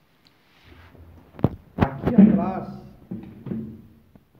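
Wooden MDF boards being handled, with two sharp knocks a little over a second in, followed by a brief sound with a wavering pitch and a few lighter knocks near the end.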